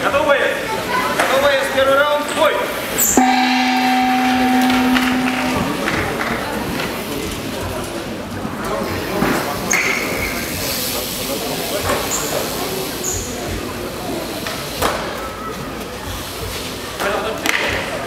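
Voices and crowd chatter, then about three seconds in a steady low buzzer tone held for about two and a half seconds, the signal that starts the round in an MMA bout. After it, crowd murmur with a few sharp knocks.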